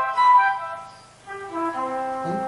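Electric guitar run through a synthesizer with a flute-like tone, playing a C arpeggio note by note with sustained, overlapping notes. The line fades out about a second in, then a descending arpeggio begins.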